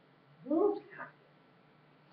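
A person's voice making a short wordless sound that rises and then falls in pitch about half a second in, with a shorter one just after.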